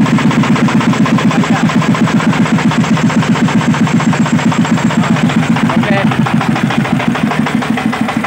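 Changfa 40 hp diesel engine of a công nông farm truck running with an even chugging beat of about seven pulses a second. In the last couple of seconds the beat turns less regular as the truck begins to move off.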